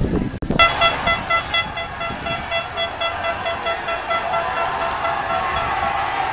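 A horn tooting in quick repeated blasts, about four a second, on one steady note. The toots are loudest for the first few seconds and then weaken.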